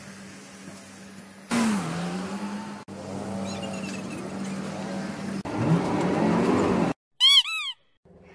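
Street traffic: motor vehicle engines running over a steady low hum, with one engine rising in pitch about two-thirds of the way through. A short, bright chirping sound with two arching notes comes near the end.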